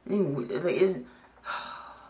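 A man's short wordless vocal sound, then a breathy exhale like a sigh about a second and a half in.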